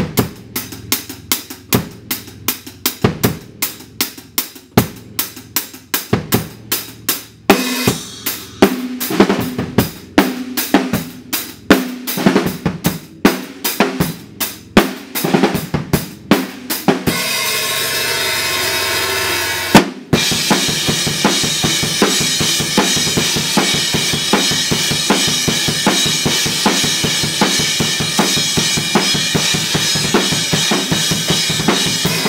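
Acoustic drum kit played hard for a metal recording take. Kick and snare hits go at a steady rhythm at first and turn busier from about seven seconds in. A few seconds of continuous cymbal wash follow, then a very fast, dense beat runs through the last third.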